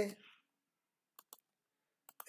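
Two quick computer mouse clicks about a second in, otherwise near silence.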